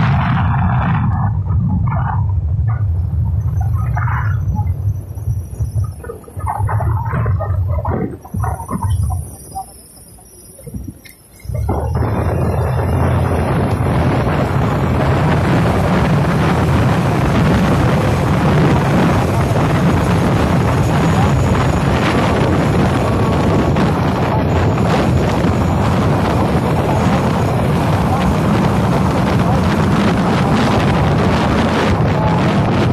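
Wind buffeting the microphone over the low rumble of a moving vehicle on the road. The sound drops away briefly about ten seconds in, then comes back as a steady loud rush of wind and road noise.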